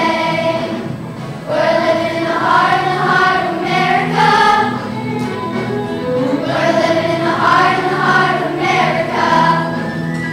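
School choir singing a song, many voices together in phrases a second or two long, with low held notes underneath.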